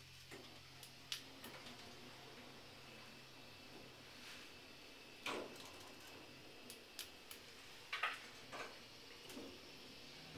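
Quiet ride in a 1990 Kone lift car travelling down, with a faint low hum that fades within the first few seconds and scattered light clicks and knocks.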